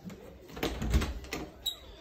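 Footsteps and handling knocks in a small room: a few light knocks and clicks, a low thud about a second in, and a sharp click near the end.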